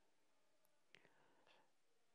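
Near silence: faint room tone, with a couple of very faint ticks.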